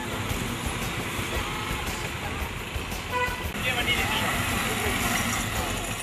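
Motorcycles and road traffic running on a road, with short vehicle horn toots, the clearest about three seconds in, and people's voices.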